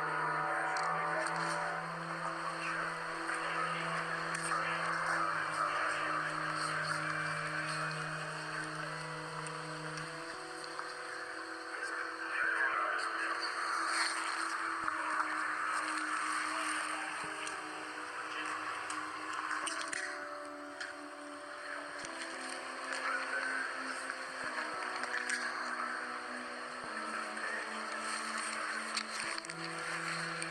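Slow background music of long held chords that shift to new notes every few seconds, over a steady rushing noise.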